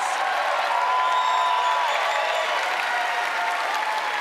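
Audience applauding, with a few voices cheering over the clapping.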